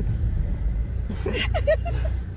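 Low, steady rumble of a car heard from inside its cabin as it creeps forward in slow traffic. A brief voice sound comes about a second and a half in.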